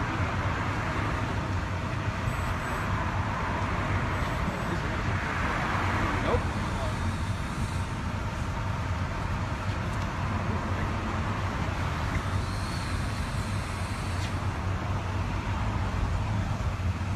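Road traffic noise: a steady low hum with the haze of cars passing, swelling a few times in the first half.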